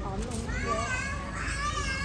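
Children's voices chattering, mixed with a person speaking Thai.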